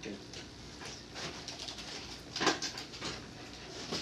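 Soft, faint breathy vocal sounds from a person over quiet room noise, with one brief breathy sound about two and a half seconds in.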